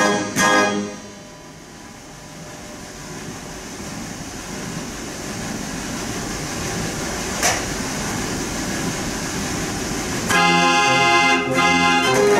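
A Theo Mortier dance organ finishes a tune with a closing chord about a second in. A pause of roughly nine seconds follows, holding a low background rumble and a single click. The organ starts its next tune near the end.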